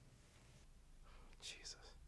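Near silence: quiet room tone, with a brief faint whisper about one and a half seconds in.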